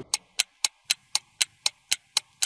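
Clock-ticking sound effect for an on-screen countdown timer: sharp, even ticks about four a second.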